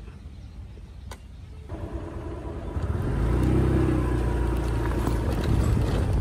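A motor vehicle engine running close by, growing louder from about two seconds in and then holding steady, with a single click about a second in.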